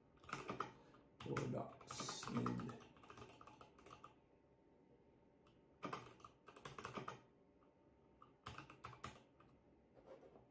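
Typing on a computer keyboard in short runs of keystrokes: a run in the first three seconds, a quiet pause, then two more runs about six and about eight and a half seconds in.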